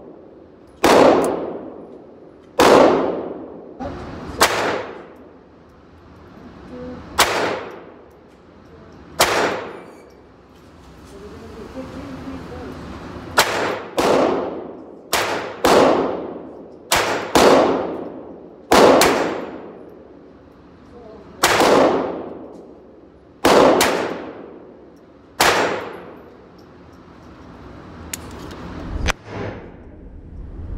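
Ruger Mark IV Tactical .22 LR semi-automatic pistol firing a string of single shots, roughly one to two seconds apart with a few quicker pairs. Each shot rings on in the reverberant indoor range.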